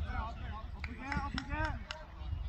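Distant shouting voices from players and spectators at a football match, with a few sharp knocks in the second half and a low rumble of wind on the microphone.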